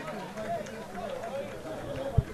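Faint, distant voices calling and talking across an open football ground, picked up by the broadcast microphone under the quiet field ambience.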